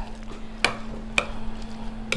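A metal spoon stirring a thick artichoke, ricotta and spinach filling in a glass bowl, with two sharp clinks of the spoon against the bowl about half a second apart. A steady low hum sits underneath.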